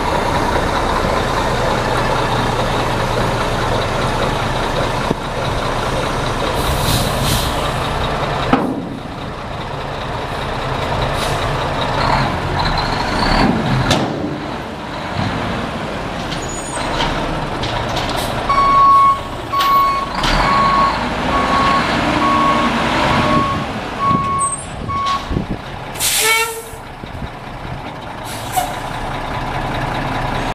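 Mack E6 11.0-litre straight-six turbo diesel running under the raised steel dump bed, louder for the first eight seconds or so and then dropping back. Through the middle, an alarm beeps about once a second for several seconds, and a sharp burst of air hiss sounds near the end.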